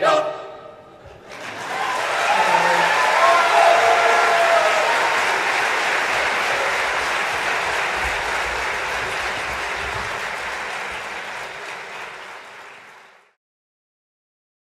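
An audience applauding after the choir's last chord dies away, the clapping building about a second in with a few voices calling out over it, then fading out near the end.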